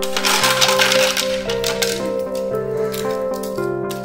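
Boiled eggshells being cracked and peeled by hand: a dense crackle of breaking shell at the start, then many sharp little clicks and cracks. Background music with a sustained keyboard melody plays throughout.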